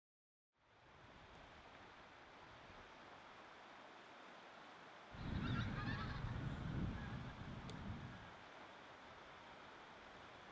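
A flock of geese honking as it flies over, the calls coming about five seconds in and lasting about three seconds, with a low rumble under them, over a faint steady outdoor hiss.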